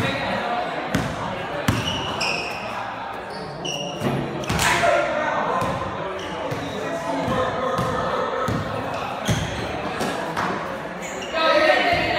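A basketball bouncing on a hard gym floor, a knock every second or so, with short high sneaker squeaks and players' voices echoing in the hall.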